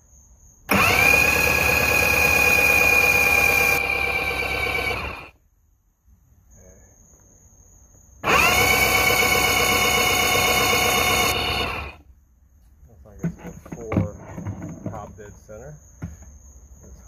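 Electric starter of a Mercury inline-four outboard cranking the engine in two long, steady whirring runs of about four and a half and nearly four seconds, each cut off abruptly without the engine catching.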